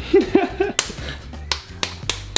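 Hands slapping and patting a raw ground-beef burger patty between the palms to shape it. There are three sharp smacks: one a little under a second in, then two close together near the end.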